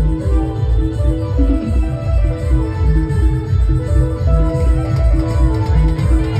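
Timli band music: a steady heavy drum beat under a plucked-string lead melody of short held notes.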